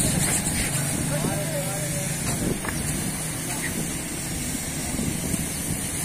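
Steady outdoor background of engine hum and hiss, with voices in the background and no single loud event.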